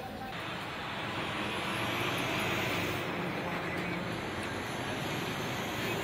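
A motor vehicle passing on the street, its engine and tyre noise swelling to a peak a couple of seconds in and then easing off.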